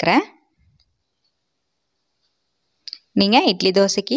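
A voice narrating in Tamil, broken by about two and a half seconds of dead silence, with one short click just before the voice resumes.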